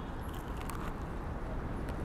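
Steady low rumble of road traffic, with a few faint crunching clicks of someone biting into and chewing a grilled maize cob.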